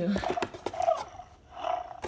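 FurReal North the Sabertooth Kitty interactive plush toy making its electronic cub sounds in reaction to having its head petted: two short calls about a second apart.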